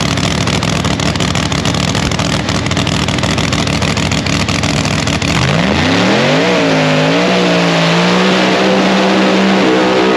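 Engine of a no-prep drag-racing Chevy Nova, running roughly at the starting line for the first half, then revving up with a rising, wavering pitch a little after halfway and holding at a steady high pitch as the car launches down the track.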